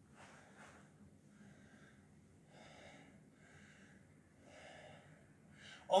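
A man's faint breathing with exertion, roughly one breath a second, during bent-over rows.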